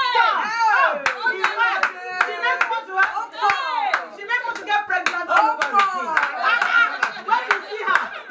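A small group of women cheering and shouting excitedly, with scattered hand clapping that comes thickest from about one to six seconds in.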